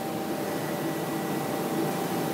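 Steady background hum of running machinery, with a few faint constant tones and no change.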